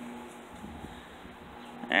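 A steady low hum with a low rumble of wind on the phone's microphone, outdoors; a word of speech begins at the very end.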